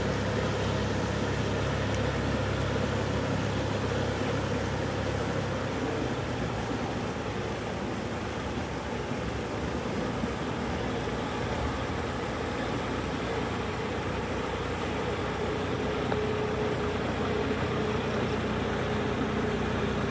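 Farm tractor's diesel engine running steadily under load as it pulls a tiller through a flooded, muddy rice field.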